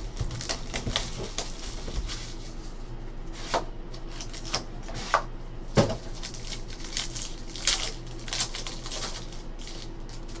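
Foil wrapper of a trading-card pack being torn and crinkled off a stack of cards, then the cards handled, with irregular sharp crackles and clicks.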